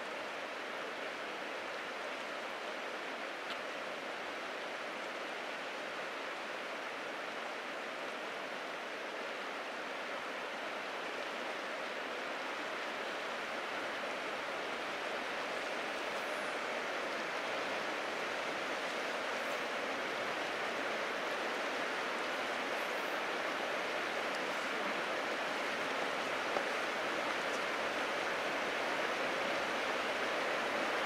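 Steady rushing of the Methow River's flowing current, slowly growing a little louder.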